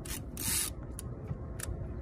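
Low, steady wind noise buffeting an outdoor microphone, with a short hiss about half a second in and a couple of faint clicks.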